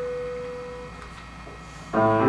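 Grand piano: a held note rings and fades away over the first second, a short pause follows, and the next chord is struck just at the end.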